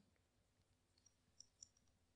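Near silence: room tone in a pause between sentences, with a few very faint small clicks in the second half.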